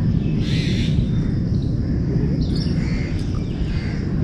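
Outdoor ambience picked up by a phone's built-in microphone: a steady low background rumble, with faint bird calls about half a second in and again around two and a half seconds.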